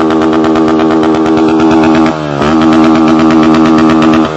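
Honda motorcycle with an open aftermarket exhaust revved hard and held at high revs, very loud. About two seconds in the revs dip briefly and then climb back up.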